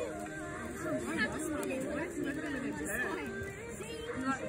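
Children's voices chattering together, the words indistinct.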